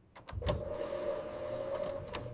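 A sharp click about half a second in, then a small motor whirring steadily with a constant hum.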